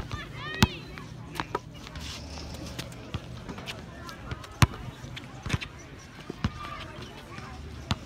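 A basketball bouncing on a hard outdoor court: sharp single thuds at irregular intervals, the strongest about half a second in and near the middle, over faint voices of people around.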